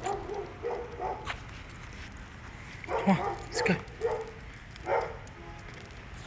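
A dog giving short yips and whines: a few soft ones at the start, then a louder group about three to five seconds in, some falling in pitch.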